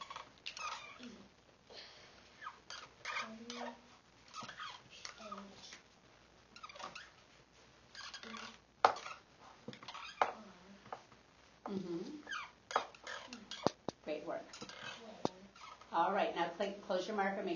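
Young children's soft voices murmuring, with a few sharp clicks of dry-erase marker caps being snapped shut; the loudest click comes about nine seconds in.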